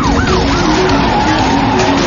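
Police car siren in a fast yelp, each rising-and-falling wail about a quarter second long, dying away about half a second in, over steady car noise.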